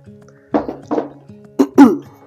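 A woman clearing her throat, loudest near the end, with a couple of shorter throaty bursts before it, over quiet background music.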